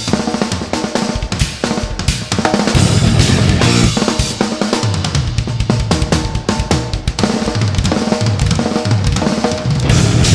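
Live instrumental progressive-metal band playing a fast, drum-heavy passage: kick drum, snare and cymbals struck in quick succession, with electric bass and other instruments underneath.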